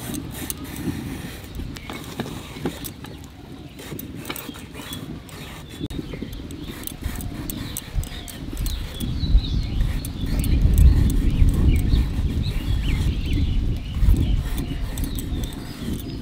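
Ridge gourd being peeled and sliced into strips on a boti, the fixed upright blade of a Bengali kitchen: a run of short, crisp cutting clicks and scrapes. A low rumble swells under it from about halfway through.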